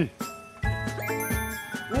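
A tinkling, chime-like music sound effect, with high bell tones coming in about a second in.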